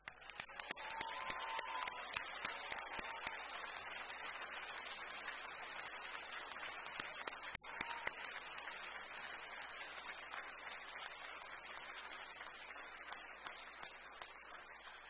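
Audience applauding: a dense round of clapping that starts all at once and eases slightly near the end.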